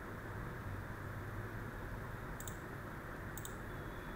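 Two sharp computer mouse clicks about a second apart, over a steady low hum and hiss of the recording room.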